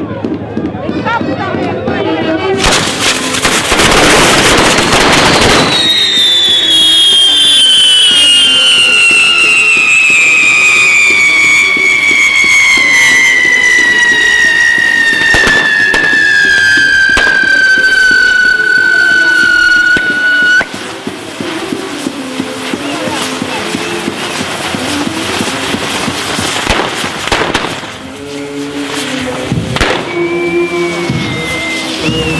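Castle-tower fireworks going off: a sudden loud rush of hissing and crackling about three seconds in. Then a loud whistle glides slowly down in pitch for about fifteen seconds and cuts off abruptly, over a continuing hiss. Music is heard under the hissing in the last part.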